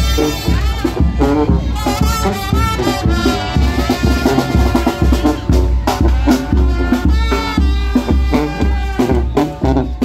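A marching brass band playing live: sousaphone bass notes and a bass drum keeping a steady beat under trombones carrying the tune.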